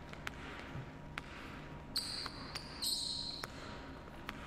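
Basketball dribbled on a hardwood gym court: a string of irregularly spaced bounces, with two short high-pitched sneaker squeaks about two and three seconds in.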